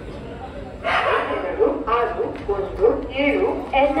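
Railway station public-address announcement over the platform loudspeakers, starting about a second in, announcing the arriving train.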